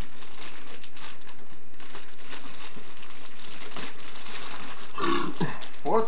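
Faint rustling and crinkling of packaging as a box is opened by hand, with small scattered clicks over a steady hiss. A short low vocal noise comes about five seconds in.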